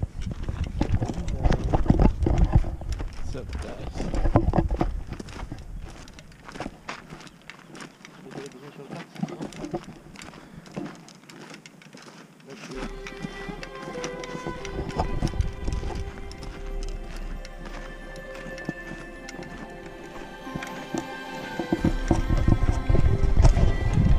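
Footsteps crunching on a gravel path in a steady walking rhythm, with low rumble on the microphone in the first few seconds and again near the end. About halfway in, music with long held notes comes in over the steps.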